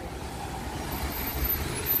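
Road traffic passing, a steady low rumble with a noisy wash over it that grows louder toward the end.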